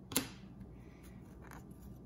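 Trading cards handled in the hand: a sharp card-stock snap just after the start, then a softer brief swipe of one card sliding off another about a second and a half in.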